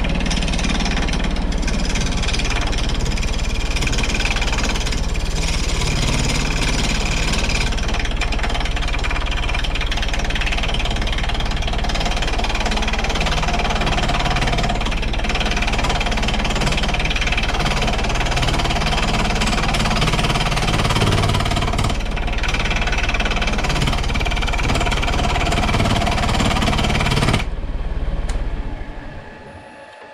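Woodturning lathe spinning a cast iron tool-rest post mounted on a large wooden disk, with a handheld turning tool taking an interrupted cut on the out-of-round casting: a loud, harsh, chattering racket as the casting knocks the tool away on every turn. Near the end the cutting noise stops and the lathe's sound fades away.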